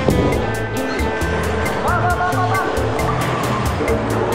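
Background music with a steady beat and a sustained bass line.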